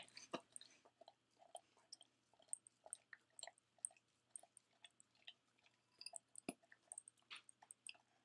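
A dog licking peanut butter out of a clear bowl held to its face: faint, irregular licks and small tongue clicks, with one sharper knock about six and a half seconds in.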